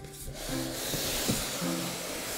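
Cardboard rubbing and sliding as a box flap is pulled open and the moulded pulp packing tray is drawn out, over soft background music.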